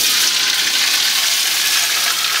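Diced ham tipped into hot cooking oil in a wok, bursting into a loud sizzle the instant it hits the oil and frying steadily.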